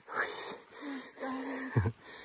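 A hiker breathing hard while climbing a mountain trail, airy breaths with a short hum of the voice in the middle. A loud low thump comes near the end.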